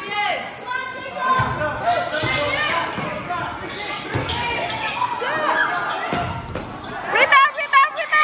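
Basketball bouncing on a gym floor in a few dull thumps, under shouting voices echoing in a large hall.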